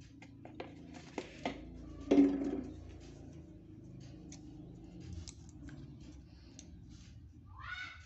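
Scattered clicks and knocks of objects being handled, the loudest a thump about two seconds in, over a steady low hum. Near the end a cat gives a short rising meow.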